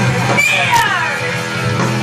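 Live punk rock band playing loud, with a high, wailing vocal that slides down in pitch about half a second in.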